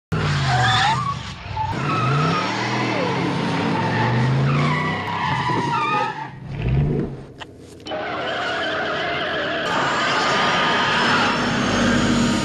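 DeLorean sports car from the film soundtrack driving around, its engine rising and falling in pitch as it passes, with tyre squeals. A quieter dip past the middle, then a steadier engine sound as the car pulls away.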